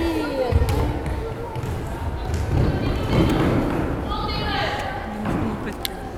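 A futsal ball being kicked and bouncing on a wooden sports-hall floor, a few sharp thuds echoing in the large hall, with high-pitched shouts and calls from players and spectators near the start and again near the end.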